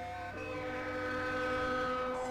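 Synthesizer drone: a held chord of several steady tones, some of which step down to a lower pitch about a third of a second in and then hold.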